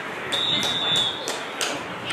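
A referee's whistle blown once as the play ends: a single steady high blast lasting under a second, over sideline chatter and a few sharp snaps.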